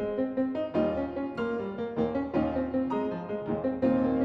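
Steinway grand piano played live: a busy passage of quickly struck notes and chords, each new attack ringing over the ones before.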